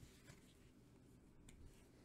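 Near silence, with faint rustles and light taps of a trading card being picked up and set down on a pile on a playmat.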